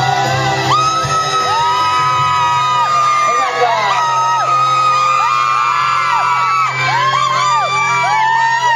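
Male ballad singer holding long notes with vibrato into a microphone over an amplified backing track. From about three seconds in, the crowd answers with many short, high overlapping calls and whoops.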